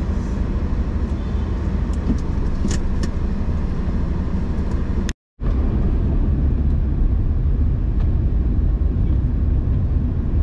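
A car driving, heard from inside the cabin: a steady low rumble of engine and road noise. It breaks off briefly about halfway through.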